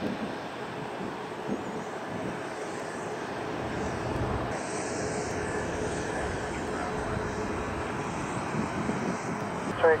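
Jet engines of a taxiing Airbus A340-600, its four Rolls-Royce Trent 500 engines at taxi power: a steady whine over a low rumble.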